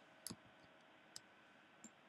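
Three faint computer mouse clicks over near-silent room tone, the first about a quarter second in and the others about a second apart: clicks placing anchor points along a path.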